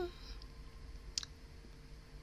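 A single short, sharp click about a second in, over a faint steady electrical hum.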